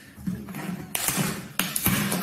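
Plastic film crinkling and cardboard rustling as hands work at a cellophane-wrapped shoe box in its taped cardboard sleeve, louder about a second in, with a couple of sharp clicks near the end.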